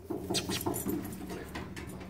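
A dog's claws clicking and scrabbling irregularly on the metal bed of a trailer as it climbs aboard, over a steady low hum.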